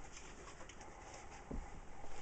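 Quiet handling of books on a shelf, with faint rustles and a soft knock about one and a half seconds in. A faint bird-like cooing is heard beneath.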